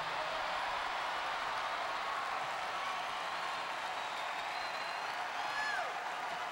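Large arena crowd cheering and applauding, with scattered whistles.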